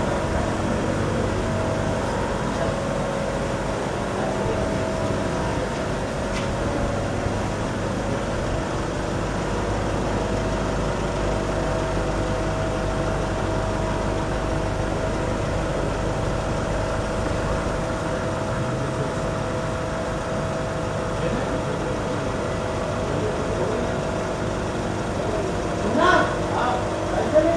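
A steady machine hum with a few held tones that does not change.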